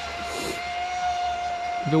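Traxxas Spartan RC boat's Leopard brushless motor, spinning a 45 mm, 1.4-pitch Oxidean prop, whining at a steady high pitch as the boat runs, dropping slightly in pitch right at the start.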